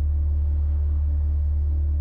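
Sound-healing music track: a steady, loud, deep drone with fainter higher tones held above it, some of them pulsing gently and evenly.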